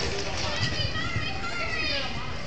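Voices of spectators in the background, children among them, talking and calling.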